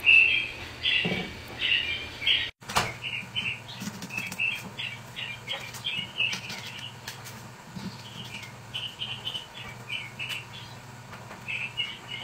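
Small birds chirping in short, high, repeated notes several times a second, over a steady low hum. A few sharp snaps near the start come from green beans being broken by hand.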